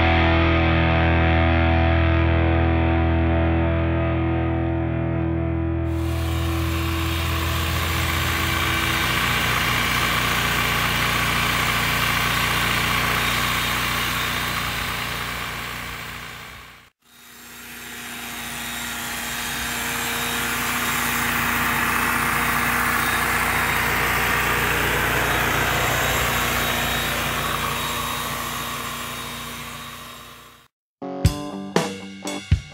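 Rock music for the first several seconds, then the steady buzz of electric animal clippers working on a mule's coat, broken by a brief dropout about seventeen seconds in.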